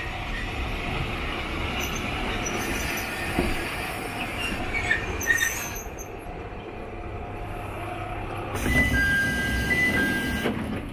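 Tsugaru Railway Tsugaru-21 diesel railcar running in along the platform and drawing to a stop, its engine a steady low rumble with short brake squeals about halfway through. Near the end a louder noisy burst comes in with two steady high tones.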